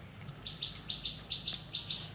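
Rhythmic high-pitched chirping, about five short chirps a second, starting about half a second in and going on steadily.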